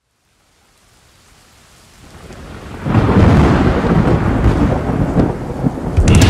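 Thunderstorm sound effect: rain hiss fading in from silence, then a loud, deep roll of thunder breaking in about three seconds in and rumbling on, as the intro to a heavy metal track.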